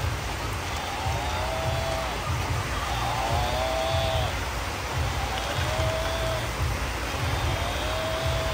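Battery-operated walking toy water buffalo playing the same short electronic sound clip over and over, about every two seconds, over a steady hiss of rain.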